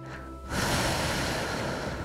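A long breath out into a headset microphone. It starts sharply about half a second in and fades slowly.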